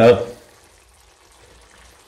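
Faint, steady simmering of a hake and prawn sauce in a frying pan on low heat, just uncovered, after a brief louder sound at the very start.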